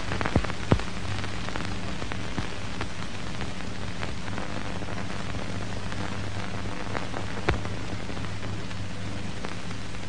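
Steady hiss with a few sharp crackles and a low electrical hum underneath: the surface noise of an old film soundtrack.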